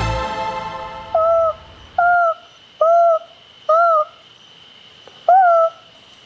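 An owl hooting: five short, clear calls, each rising slightly then falling, about a second apart with a longer gap before the last. Organ music fades out at the start.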